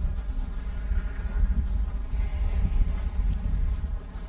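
A steady low rumble with a faint buzzing hum underneath, without speech.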